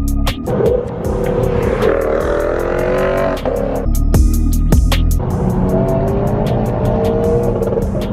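A car engine accelerating hard at high revs, in two pulls of rising pitch over wind and road noise, with a short burst of music between the pulls.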